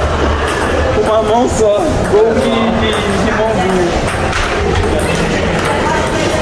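Foosball table in play: the ball and rods clack and knock against the table at irregular moments. Voices and room chatter carry on over the clacks.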